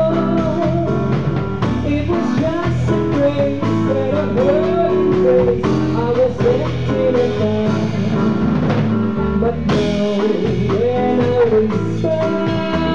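Live small-band performance: piano and drum kit playing a slow song, with a woman's voice singing over them in gliding, held phrases.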